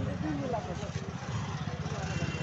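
Motorcycle engine running as the bike is ridden along, a steady fast low pulsing.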